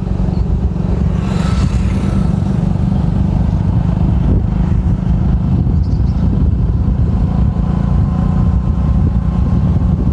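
Steady low rumble of a moving road vehicle, engine and road noise from riding along a road, with a brief rise of hiss about a second and a half in.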